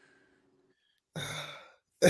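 A man's breathy sigh-like exhale, about a second in and lasting half a second, in a pause between laughs and talk.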